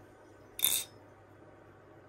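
Armshark Tsunami balisong (butterfly knife) being flipped: one sharp metallic clack of its handles about half a second in.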